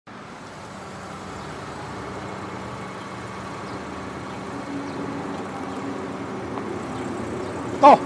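A Honda CR-V's engine and tyres running at low speed as the SUV is manoeuvred into a parking space, a steady hum that grows gradually louder. Just before the end a man calls out directions.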